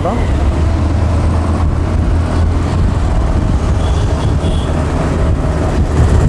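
Motorcycle riding along a road in traffic: a steady low engine hum under wind and road noise.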